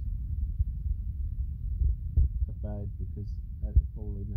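A steady low rumbling throb with a few dull thumps, and a short muffled voice a little past the middle.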